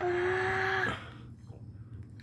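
A boy's drawn-out whine of dread, held on one steady pitch for just under a second and then cut off, leaving a low steady hum.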